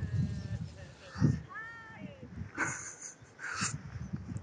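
Gusty wind rumbling on the microphone, with faint, distant, high arcing calls about one and a half seconds in.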